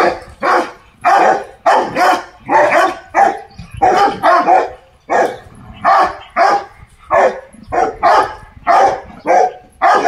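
Rottweiler barking in a steady run of loud, short barks, about two a second.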